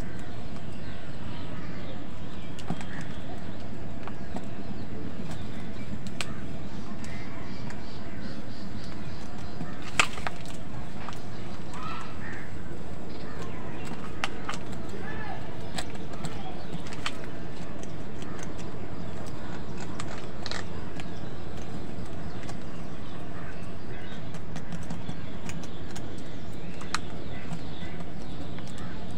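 House crows feeding together at a plastic bowl: scattered short caws and calls, and sharp clicks of beaks pecking against the bowl, the loudest about ten seconds in, over a steady low background noise.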